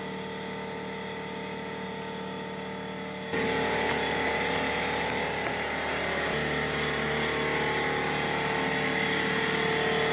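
A motor running steadily with a hum of several held tones, which gets suddenly louder about a third of the way in.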